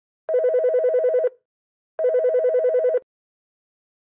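Yealink SIP-T53W IP desk phone ringing for an incoming call: two rings of about a second each, each a rapid electronic warble, with a short pause between.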